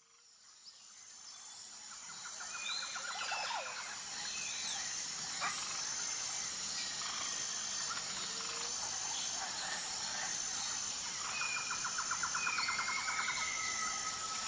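Birds chirping and calling over outdoor ambience, fading in over the first few seconds. A rapid trill comes about two seconds in and again near the end.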